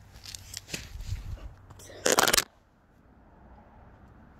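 Handling noise from a phone being moved: a run of rustles and small clicks, then a loud, brief burst of noise about two seconds in.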